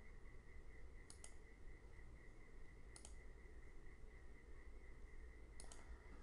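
Faint computer mouse clicks: a pair about a second in, a single click about three seconds in, and another pair near the end, over a faint steady whine and low hum.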